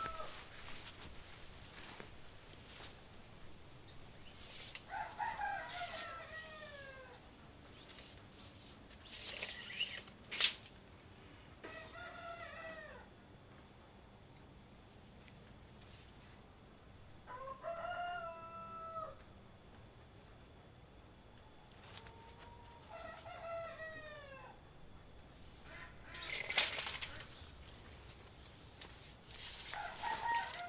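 Rooster crowing about four times, each crow a falling call of a second or two. A couple of sharp rustling clicks stand out louder, about ten seconds in and again near the end.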